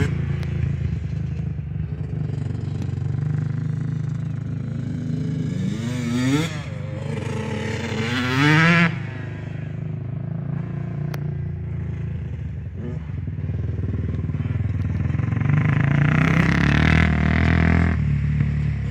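Kawasaki KFX400 four-stroke quad and big-bore Yamaha YZ125 two-stroke dirt bike engines running on a dirt flat track. Twice in the middle the revs rise sharply as a rider accelerates, the second time loudest. Near the end the engine noise grows louder as a bike comes close.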